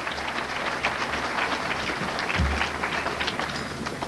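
Audience applauding, heaviest in the middle and thinning toward the end, with a brief low thump about two and a half seconds in.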